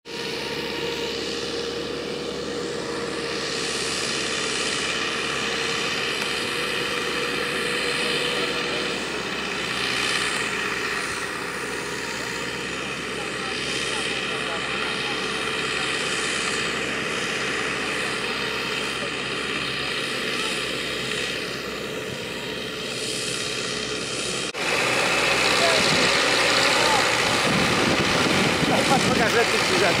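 Diesel engines of a tractor and a Bizon combine harvester running steadily under load as the tractor tows the bogged-down combine through a wet field, with a steady whine over the drone. About 24 seconds in the sound cuts to a louder, closer engine.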